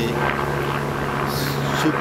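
A steady low mechanical drone, like a distant engine, with a short intake of breath about a second and a half in.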